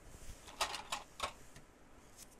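A few light clicks and taps of a small plastic ink pad being picked up and handled.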